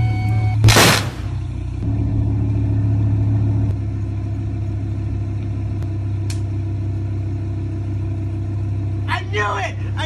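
Audi R8 sports car's engine running at a steady idle with a low drone. A loud, sharp burst of noise comes just under a second in.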